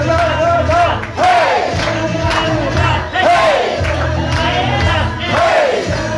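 A crowd of voices singing and shouting the 'na na na… hey!' chant of an upbeat worship song, over loud music with a heavy, steady bass.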